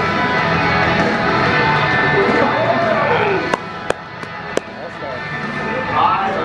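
Music with a voice over it, from a video played aloud in the room. A few sharp clicks come about halfway through, and the sound drops quieter after them.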